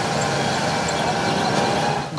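Street traffic noise: a steady mix of small vehicle engines and road noise from a busy town road with auto-rickshaws.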